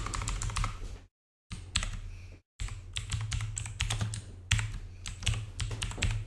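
Typing on a computer keyboard: rapid runs of keystroke clicks as a word is typed into a text box, with two short pauses.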